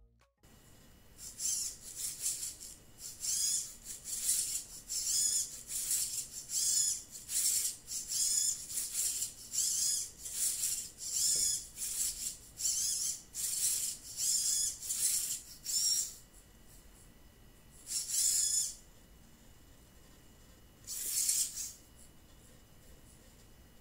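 The humanoid robot's arm servos whirring in short high-pitched bursts, about one and a half a second, each rising and falling in pitch, as the arms move to follow a person's arm angles tracked by camera. The bursts stop about sixteen seconds in, and two more come near the end.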